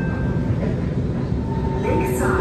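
Low, steady rumble of an SMRT C151 metro train heard from inside the car, with a steady tone coming in about one and a half seconds in and a short hiss near the end.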